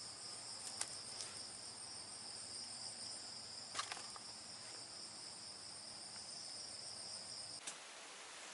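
Steady, high-pitched insect drone, faint, that cuts off suddenly near the end, with a couple of faint clicks.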